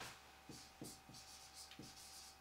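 Faint strokes of a marker pen writing letters on a whiteboard: a few short scratching strokes.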